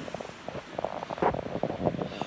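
Handling noise of a hand-held phone being moved about: a quick, uneven run of rubs, scrapes and knocks, loudest a little past a second in and near the end.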